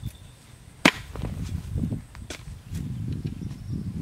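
A metal hoe blade chopping into soil. One sharp strike comes about a second in and is the loudest; lighter strikes and knocks of the blade in the earth follow over a low rumble.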